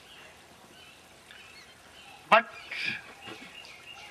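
Faint bird calls outdoors, thin wavering chirps over low background noise, with one short spoken word from a man a little past halfway.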